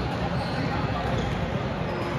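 Busy gym sound: basketballs bouncing on the courts and people's voices, a steady mix with no single sound standing out.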